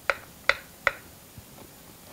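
Kitchen knife cutting through diced avocado onto a plastic cutting board: three light clicks in quick succession in the first second.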